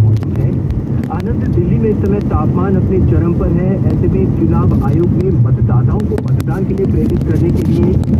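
Steady low rumble of a moving car's engine and road noise heard inside the cabin, with voices talking over it.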